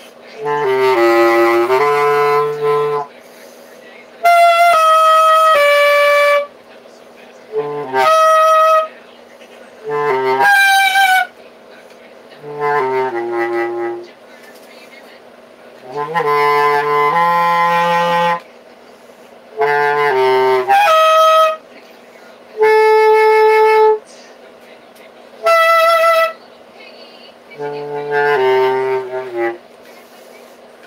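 Bass clarinet played in about ten short phrases of a few notes each, separated by brief pauses. Most phrases sit on low notes, while several leap up to much higher notes.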